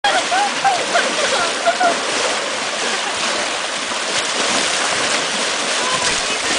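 Pool water churning and splashing as several people wade quickly round an above-ground pool, stirring up a whirlpool current. Voices call out over it in the first two seconds.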